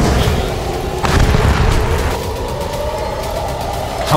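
Self-propelled howitzer firing: a heavy boom at the start and another about a second in, each followed by a low rumble.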